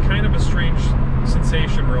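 A man talking over the steady drone of a 2000 Honda S2000's F20C 2.0-litre four-cylinder engine and road noise inside the cabin. The car is cruising at freeway speed with the engine at about 4,200 to 4,500 rpm, high for cruising but normal for this car.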